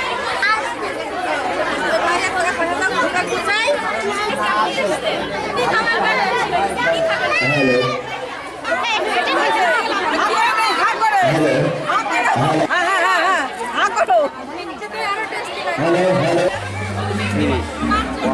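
Crowd chatter: many people talking at once, their voices overlapping with no single speaker standing out.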